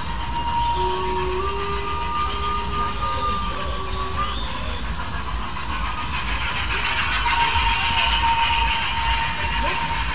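Funfair ambience: people chattering over a steady low rumble, with a thin steady high tone and, from about one to four seconds in, a second held tone at two pitches.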